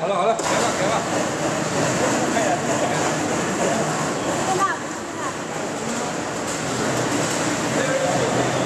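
Snack-production machinery of a corn curl processing line running with a steady, dense noise that comes in suddenly just after the start, with voices faintly over it.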